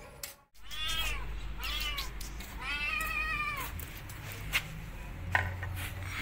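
A hungry stray kitten meowing three times, each call rising then falling in pitch, the third the longest. Two sharp taps follow near the end.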